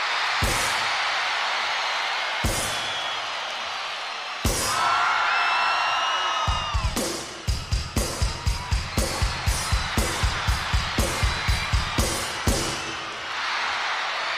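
Live concert drum hits over a steady roar of crowd screaming: three single heavy hits about two seconds apart, then a fast run of even drum beats, about four a second, for some five seconds. The crowd noise swells again near the end.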